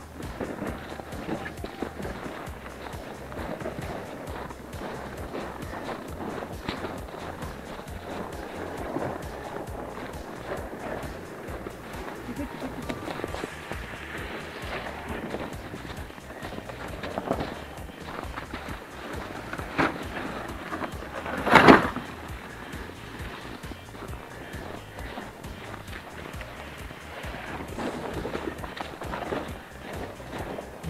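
Footsteps in shallow snow at a steady walking pace, with the rustle of a handheld camera, and one loud thump a little over two thirds of the way through.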